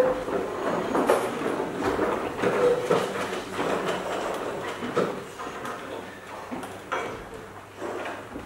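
Set pieces and props being moved on a darkened stage: irregular knocks, scrapes and rolling rumble, with a sharper knock about five seconds in and another near seven seconds.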